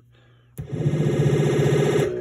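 Electronic sound effect from a Gottlieb Caveman pinball speech and sound board, played during a sound test. After a brief quiet, a loud, steady synthesized tone with a fast pulsing starts about half a second in.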